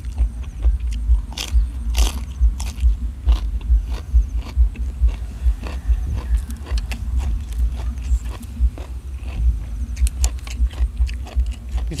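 A person chewing a mouthful of spicy golden apple snail salad with vegetables, close to the microphone: continuous crunching with many sharp, crisp cracks over low, pulsing jaw thuds.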